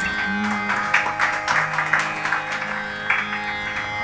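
Carnatic concert accompaniment between pieces: a steady drone with short instrumental notes and light strokes played over it.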